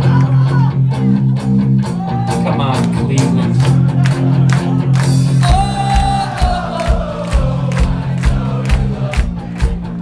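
Live rock band with electric guitars, bass and drums playing a chorus, with the singer and the crowd singing along. About halfway through the drums pick up a steady kick-drum beat under a long sung note that falls slowly in pitch.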